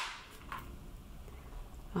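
Low room tone with one faint, light knock about half a second in, from a polycarbonate bonbon mold being handled as the chocolates are unmolded.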